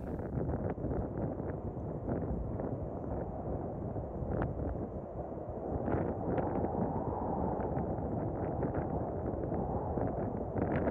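Wind buffeting an outdoor microphone: a steady low rumble with scattered light crackles.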